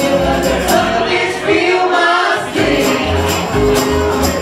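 Live band music: vocals over upright bass, guitars and drums, with a tambourine struck in time. The low end drops out briefly about halfway through.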